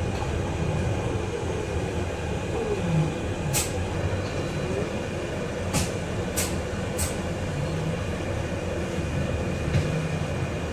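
Cabin noise on the upper deck of an MCV-bodied Volvo BZL battery-electric double-decker bus drawing up at a stop: a steady low rumble with a thin steady whine over it. Four short sharp clicks or rattles come in the middle, three of them close together.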